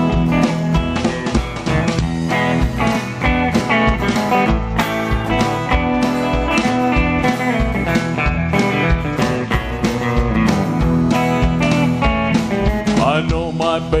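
Live country band playing an instrumental break between verses: electric and acoustic guitars over bass and drums, with a steady beat. The singing comes back in right at the end.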